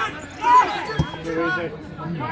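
Shouting voices on a football pitch, loudest about half a second in, with a single thud of a football being struck about a second in.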